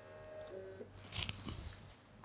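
Small stepper motor on an A4988 microstepping driver running with a faint steady whine, which stops a little under a second in as the axis reaches its limit switch during calibration. A few faint clicks follow.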